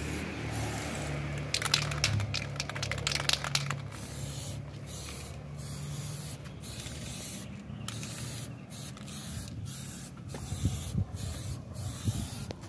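Aerosol spray can hissing onto a painted canvas in a string of short bursts with brief breaks between them. A quick run of sharp clicks comes about two seconds in.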